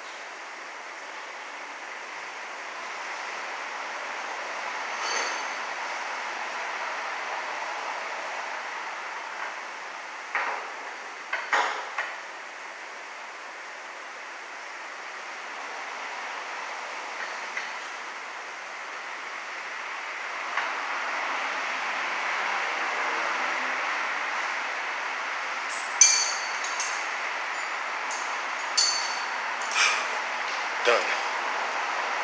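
Metal hand tools clinking and knocking on the underside of a minivan during a wheel alignment, with a cluster of sharp clinks about ten to twelve seconds in and a few more near the end, the loudest around twenty-six seconds. Under them runs a steady workshop hiss that swells and fades.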